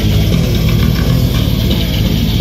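A heavy metal band playing live and loud: heavily distorted electric guitars over bass, in a dense, fast, unbroken wall of sound.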